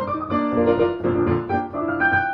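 Piano playing a passage of notes in succession, several notes sounding together with each chord or note held briefly before the next.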